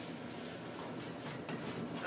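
Faint scraping and a few light clicks of double-wall sheet-metal stovepipe sections being turned against each other to line up their screw holes.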